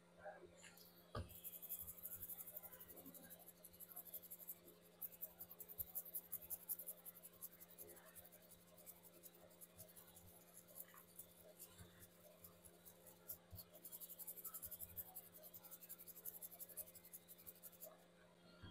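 Faint, quick scratchy scrubbing of a stiff bristle brush over a metal BGA reballing stencil holding a chip, with a short pause about two-thirds of the way through.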